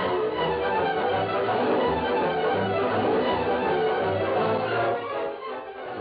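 Orchestral music led by bowed strings, playing as a scene-change bridge in an old-time radio drama, dying away just before the end.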